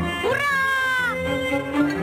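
A high, drawn-out gleeful cry from a cartoon child, rising sharply and then sliding slowly down in pitch for about a second, over light orchestral background music.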